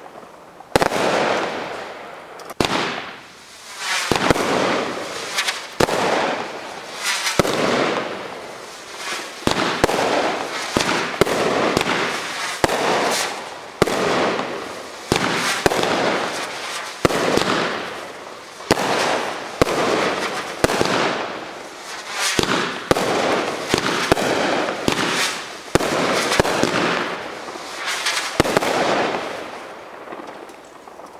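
Firework cake firing shot after shot, about one every second or two, each shot followed by a long crackling burst in the sky; it fades out near the end.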